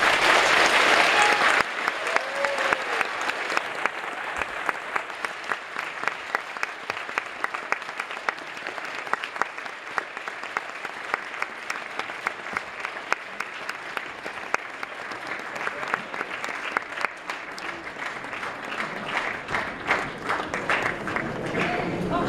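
Audience applauding in a hall at the end of a lecture. A loud burst of clapping in the first second and a half settles into steady applause.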